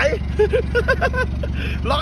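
A man laughing, a quick string of short laughs in the first half, over the steady low idle of an Isuzu D-Max's 2.5-litre turbodiesel engine.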